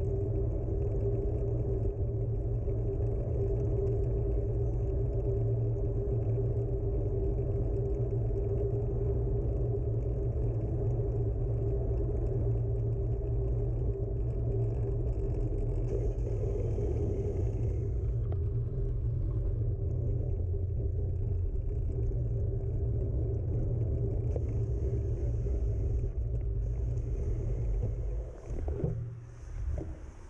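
Riding noise from a bicycle rolling along asphalt: wind buffeting the handlebar-mounted camera's microphone and tyre rumble, a steady low rumble with a constant hum. Near the end it drops away, with a few knocks.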